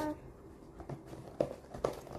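A hand mixing thick flour-and-egg tortilla batter in a plastic tub, with a few short soft knocks and squelches in the second half.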